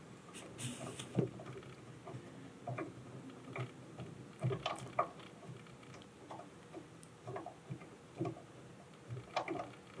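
Faint, irregular small clicks and scrapes of a butterfly screw being turned by hand into a threaded speaker-mounting bracket, many turns in a row.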